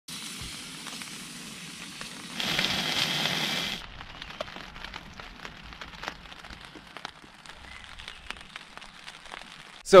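Food sizzling in a frying pan on a small gas camping stove, louder for about a second and a half near the start. It then drops to a quieter hiss with scattered small clicks.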